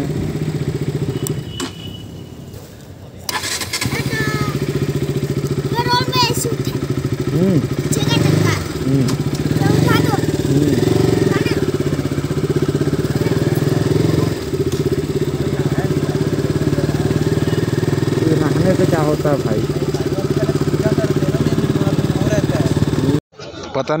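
A KTM RC sport bike's single-cylinder engine idling steadily at a standstill. The engine sound drops away about a second and a half in and comes back at about four seconds. Voices from a crowd are heard faintly over the idle.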